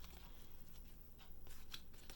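Faint papery rustling and a few soft clicks of tarot cards being slid and fanned between the hands.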